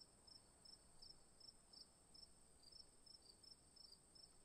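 Faint cricket chirping, about three chirps a second over a steady high whine: the stock crickets sound effect for an awkward silence with no answer.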